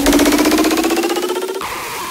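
The build-up of a hardstyle track: a rapid roll of repeated synth hits climbing steadily in pitch, with the bass cut out. About one and a half seconds in, the roll thins out into a quieter sustained tail.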